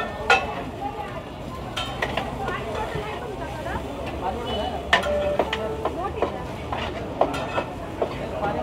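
Metal spatulas scraping and clanking on a large flat metal pan as a heap of biryani rice is stirred and tossed, with a soft sizzle underneath. The clanks come irregularly, the loudest about five seconds in.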